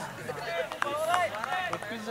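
Speech only: voices of people talking in the background.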